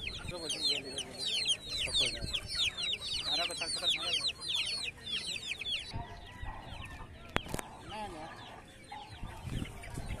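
A crowd of Aseel chicks peeping: rapid, high-pitched, downward-sliding peeps, many at once. They drop away about six seconds in, leaving fainter bird calls and a single sharp click.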